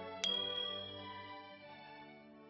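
A bright, short ding from a subscribe-button animation's sound effect. It starts with a click about a quarter second in and rings out over about half a second, over soft sustained background music that fades away.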